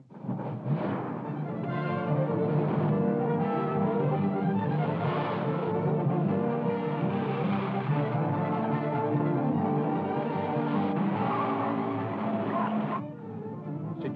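Orchestral film score music, loud and sustained, that starts abruptly and drops away about a second before the end.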